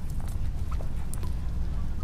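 Steady low background hum with a few faint, short clicks.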